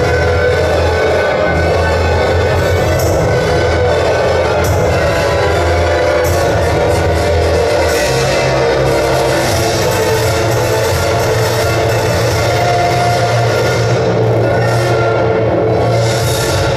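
Loud music accompanying a rhythmic gymnastics hoop routine, its bass line shifting to a new note about halfway through.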